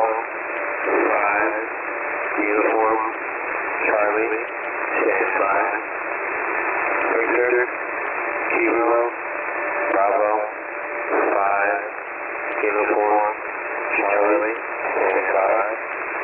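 A man's voice over shortwave single-sideband radio, thin and narrow-band, reading out single words about every second and a half through steady static hiss: an HFGCS operator reading the characters of an Emergency Action Message in the phonetic alphabet.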